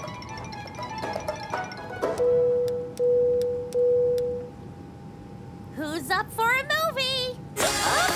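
Cartoon sound effect of three identical beeps at one steady pitch, each about two-thirds of a second and fading, over light background music. Near the end a warbling voice is heard, then loud music bursts in suddenly.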